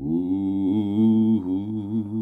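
A man singing unaccompanied, holding one long sustained note that settles after a small rise at the start, with a vibrato that grows wider through the second half.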